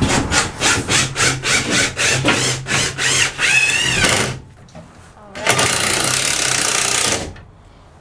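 Hand saw cutting a wooden board: quick back-and-forth strokes, about four a second, for about four seconds. After a short pause comes a steady harsh noise lasting almost two seconds.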